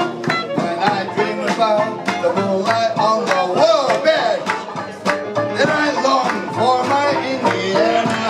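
A man singing with a traditional New Orleans jazz band, whose rhythm section keeps a steady beat of about two strokes a second.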